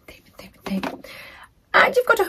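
A woman's voice muttering quietly under her breath, then starting to speak again near the end.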